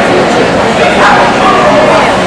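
Dog barking and yipping over the steady chatter of people.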